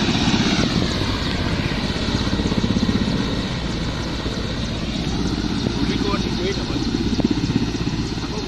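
Helicopter coming in to land, its rotor beating rapidly under a steady engine whine that slowly rises and falls in pitch.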